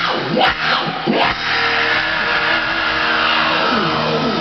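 Loud live rock band noise with electric guitar making swooping pitch glides: a few quick swoops up and down in the first second or so, then one long slow fall in pitch over the last two seconds.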